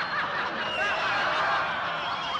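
Theatre audience laughing together, many voices chuckling and snickering at once.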